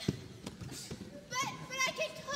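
Young performers' voices calling out in short, high-pitched shouts on a stage, with a single thump just after the start.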